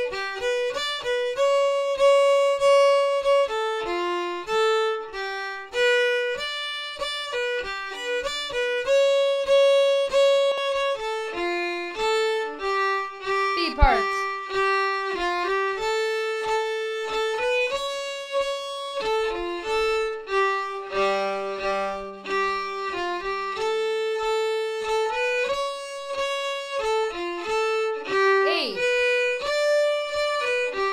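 Solo violin playing an Estonian folk tune slowly in three-beat time, a melody that comes from the Jew's harp. There is a short falling sweep about halfway through.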